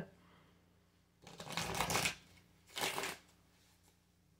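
Tarot deck shuffled by hand in two short bursts, the first about a second in and the second, shorter, near three seconds in.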